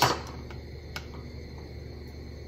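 Two faint clicks, about half a second and a second in, as a metal ladle and a plastic canning funnel touch a small glass canning jar while salsa is ladled in, over a steady low hum.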